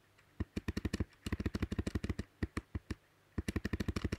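Computer keyboard keys clicking in rapid runs of about ten presses a second, mostly repeated presses deleting lines of code, with a short break about three seconds in.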